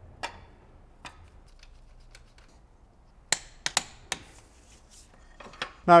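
Wrench and other hand tools clinking against a steel camshaft timing tool on the intake cam: scattered light metallic clicks, with a quick run of sharper clicks about three and a half seconds in.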